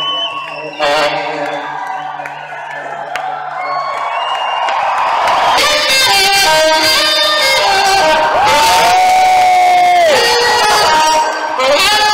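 Live rock band playing in an arena, heard from the crowd, with the audience cheering. The sound swells and grows louder from about halfway, with one long held note near the end.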